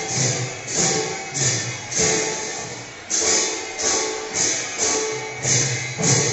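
Live traditional Assamese music: khol barrel drums under loud, accented clashes of cymbals landing every half second to a second.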